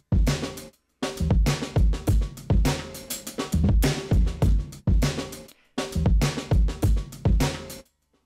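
Drum loop of kick, snare and hi-hats played through Ableton Live's Gate, chopped in and out as the gate opens and closes, with short drops to silence about a second in and near the end. The gate's Return (hysteresis) is set high, so more of the drums gets through between the opening and closing levels.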